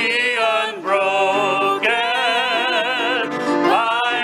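A man singing a slow hymn solo with wide vibrato and long held notes, accompanied by piano.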